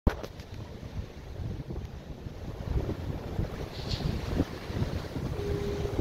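Wind buffeting the microphone over the wash of surf on a rocky shore, with a few handling knocks at the start. A faint steady hum comes in near the end.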